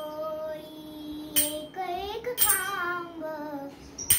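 A young girl singing a Marathi abhang in long, gliding held notes. She keeps time on small hand cymbals (taal), which ring out in two sharp clashes about a second apart in the middle.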